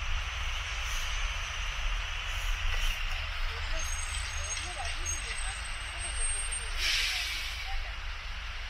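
City street traffic: a steady low engine rumble and road noise from passing cars, trucks and buses. A thin high whine runs through the middle, and a short loud hiss comes near the end. Faint voices of passers-by are heard.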